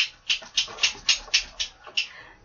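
A pet dog making a quick run of short, hissy noises, about four a second.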